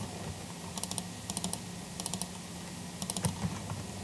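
Short groups of sharp clicks from a computer's mouse and keys, coming in quick clusters several times with pauses between them, over a faint steady low hum.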